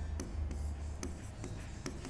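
Handwriting: a pen scratching in short, irregular strokes as words are written out, over a low steady hum.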